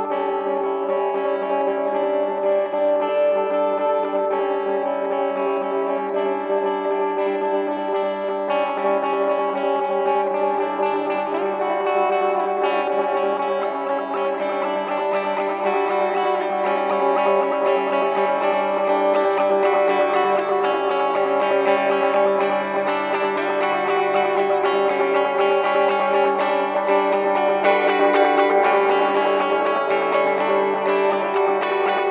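Experimental guitar played through effects: dense layers of long, held tones that drone and shift slowly, with some distortion, swelling a little louder in the second half.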